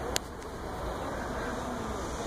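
Steady outdoor background noise, a low rumble and hiss, with one short click a moment in.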